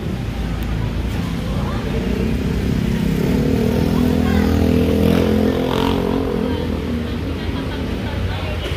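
A motorcycle engine running close by in street traffic. It grows louder over the first few seconds, is loudest about five seconds in, then eases off.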